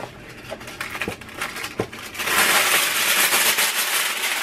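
Aluminum foil being pulled off its roll from the box, with a few light clicks of the box being handled at first. About two seconds in, loud, dense crinkling begins as the sheet unrolls and flexes.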